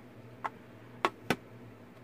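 Three light clicks as a sheet of paper is handled and lifted out of a tray of embossing powder, the last two close together just after a second in.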